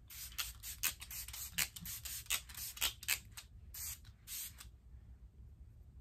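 Travel-size Smashbox Primer Water pump bottle spraying the face: over a dozen quick spritzes in a row, stopping about four and a half seconds in.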